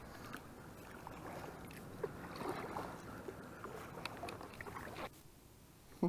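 Muffled rustling and scattered light knocks of gear being handled in a plastic fishing kayak, over a haze of water and wind noise on a wet camera microphone. The sound drops off abruptly about five seconds in.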